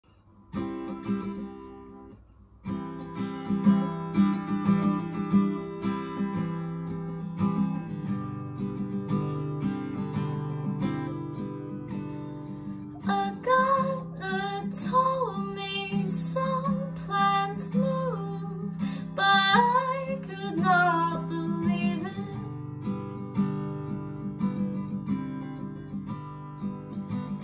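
Acoustic guitar playing a song's intro: a chord about half a second in that rings and fades, then steady playing from about three seconds on. A woman's voice sings without clear words over the guitar for about ten seconds from the middle.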